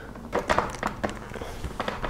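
A 3D-printed plastic chin mount being fitted by hand against a motorcycle helmet's shell: a series of light, irregular taps and clicks as it is lined up and pressed into place on its adhesive tape.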